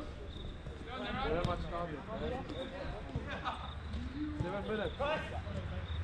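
Players' voices calling out across a five-a-side soccer pitch, faint and distant, with a couple of short knocks.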